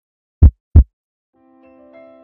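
A heartbeat sound effect: one loud lub-dub pair of deep thumps about half a second in. Soft sustained keyboard notes begin after the halfway point.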